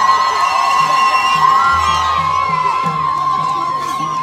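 Traditional Dakka Marrakchia music with crowd cheering and shouting. A single high note is held steadily throughout, over a soft low drum pulse.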